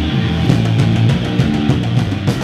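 Hardcore punk band playing live: distorted guitar and bass over fast drumming with repeated cymbal hits. The band comes in loud right at the start.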